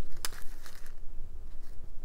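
Small plastic toys and packaging handled by hand: one sharp click a quarter-second in, then a few faint ticks and rustles over a low hum.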